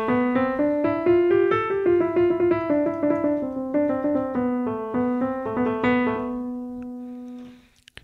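Digital piano playing a quick run of notes in A natural minor on the white keys, climbing for about two seconds and then stepping back down. It ends on a long held note that fades away.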